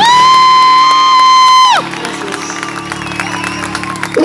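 Live band's closing note: a loud, high, steady tone held for nearly two seconds and then cut off, over a lower sustained note that rings on quietly, with the audience cheering.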